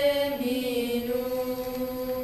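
Children singing in unison, holding out a long note that steps down in pitch twice.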